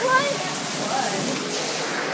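Steady rush of running water flooding the room, an even hiss that doesn't let up.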